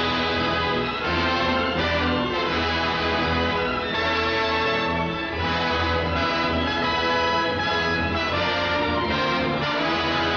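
Orchestral film-score music with prominent brass, playing steadily under the trailer's credit cards.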